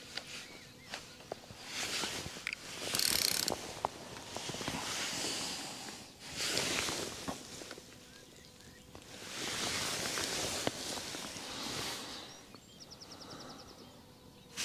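Spells of rustling noise come and go, with a few sharp clicks. Near the end, a fishing reel gives a quick run of ticks as it is worked.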